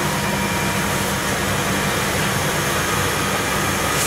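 Steady mechanical hum and hiss, unchanging throughout.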